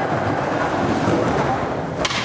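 Skateboard wheels rolling on a concrete bowl, a steady rumble.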